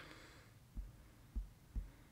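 Three soft, low thumps, unevenly spaced in the second half, over faint room tone.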